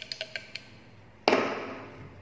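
Plastic bottles being handled: a few light clicks and taps, then one louder knock a little past halfway that fades out quickly.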